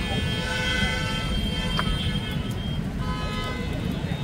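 A vehicle horn sounding in two long steady blasts, the first lasting about two and a half seconds, the second starting about three seconds in, over a steady low rumble. A single sharp crack comes just before the first blast ends.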